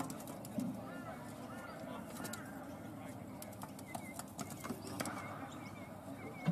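Birds calling: a run of short arched chirps, then quicker wavy calls near the end, over a faint murmur of distant voices and scattered light clicks.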